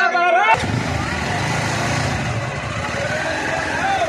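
A man's voice for the first half-second, then several 200 cc motorcycle engines running steadily, with crowd noise behind.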